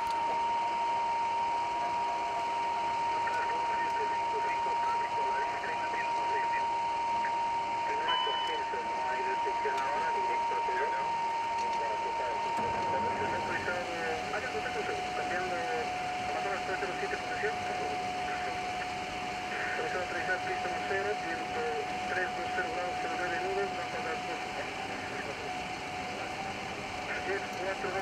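Flight-deck noise of a Bombardier CRJ-200 regional jet on final approach: a steady rush of airflow and engine noise. Over it runs a steady whine that steps down in pitch about halfway through, with indistinct voices underneath.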